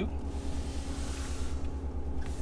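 Pickup truck's engine idling, heard from inside the cab as a steady low hum, with a faint hiss over the first second and a half.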